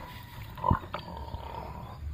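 A wild boar grunting once, short and loud, about two-thirds of a second in.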